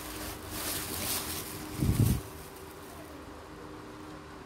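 Silk saree fabric rustling as it is unfolded and spread out on a table, with a dull thump about two seconds in. After that only a faint steady hum.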